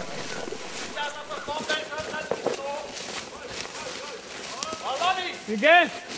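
Men shouting to each other across a forest: faint, distant calls in the first half, then one loud, close shout near the end.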